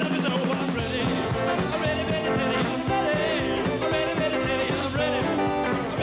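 Rock and roll band playing an up-tempo number with a steady, driving beat.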